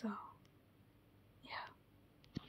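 A woman's soft, whispery voice trailing off at the start, then a short breathy sound about a second and a half in.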